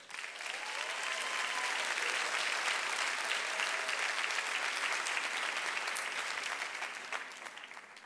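Theatre audience applauding, swelling up quickly at the start, holding steady and dying away near the end.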